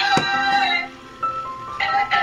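Dancing cactus toy playing a tinny electronic tune from its built-in speaker, with a short falling swoop near the start and a brief pause about a second in before the melody picks up again.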